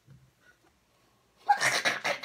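Near silence, then about one and a half seconds in a sudden, loud, breathy vocal burst from a person.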